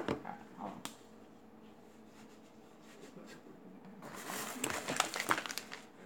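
Hands handling things close to the microphone: a sharp click at the very start, then quiet, then a run of rustling and scraping for the last two seconds.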